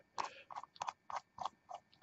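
A quick run of small, faint clicks and ticks from steel atomizer parts being handled and fitted together as the top cap goes on over its O-rings.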